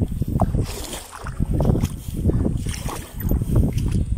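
Wind buffeting the microphone: an irregular low rumble that surges and fades several times.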